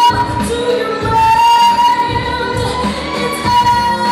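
A woman singing live into a microphone over music with a steady beat, holding a long note about a second in.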